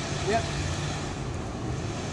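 Steady low rumble of cars driving over the railroad grade crossing, with a short spoken "yep" near the start.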